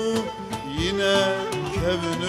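Live Turkish Sufi (tasavvuf) music: a male voice sings an ornamented, wavering melody over plucked oud and hand-drum beats.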